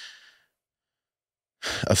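A pause in a man's speech: a short breathy exhale trailing off, about a second of complete silence, then his voice resumes near the end.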